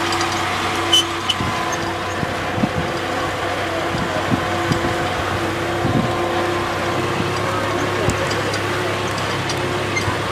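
Farm tractor engine running at a steady speed while towing a hayride wagon, with scattered knocks and rattles from the wagon over the ground.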